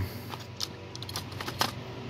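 Light, irregular clicks and taps of plastic as the display screen of a 2012 Audi Q5 instrument cluster is handled while its ribbon-cable connector is released. A few scattered clicks are followed by a quick cluster of them about a second and a half in.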